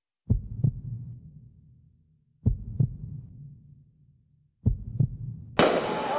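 A slow heartbeat sound effect: three low double thuds, lub-dub, a little over two seconds apart. Near the end a sudden loud burst of noisy street sound cuts in.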